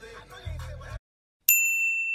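A single bright, bell-like ding, an editing sound effect over a title card, starting sharply about one and a half seconds in and ringing as one clear tone for about a second. Just before it the sound track cuts to dead silence for about half a second.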